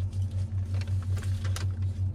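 Low, steady hum of a car running, inside its cabin, pulsing at a quick regular beat, with a few faint clicks and rustles over it.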